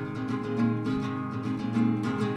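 Acoustic guitar strummed in steady, sustained chords as song accompaniment, with no voice over it.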